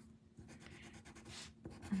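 White coloured pencil shading on a paper drawing tile: faint, quick, scratchy strokes of the pencil lead rubbing over the paper, busiest in the middle.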